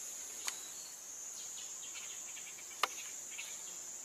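A steady, high-pitched insect chorus in dense forest, with two sharp clicks, one about half a second in and one near three seconds.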